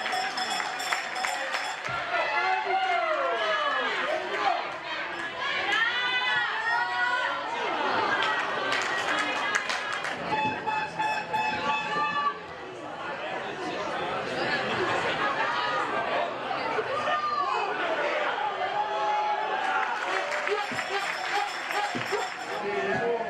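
Voices shouting and calling out across a football pitch, with chatter and music underneath.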